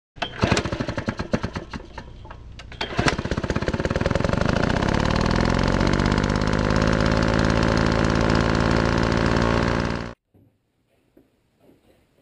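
Loud, fast mechanical hammering: irregular sharp knocks for the first few seconds, then a steady rapid rattle that runs for about seven seconds and cuts off suddenly.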